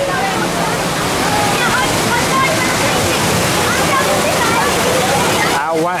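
Water rushing and churning through a river rapids ride's channel, a steady roar, with voices of people around mixed in; a voice speaks up near the end.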